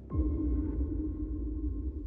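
Television music sting: a sudden deep hit with a quick falling sweep, then a steady electronic drone held over a low rumble.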